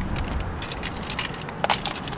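Keys jingling amid rustling and clicks as a person climbs out of a car, with a sharp knock near the end.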